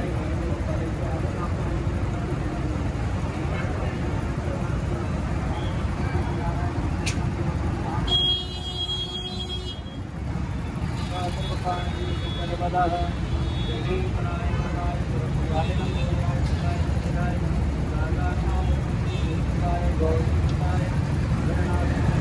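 Steady road-traffic rumble with indistinct voices underneath. About eight seconds in the rumble briefly dips and a short high-pitched tone sounds.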